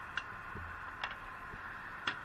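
Three sharp clicks about a second apart over a steady background hum.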